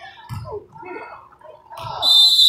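Indistinct voices of spectators and players in a gym, broken and overlapping, with no single clear word.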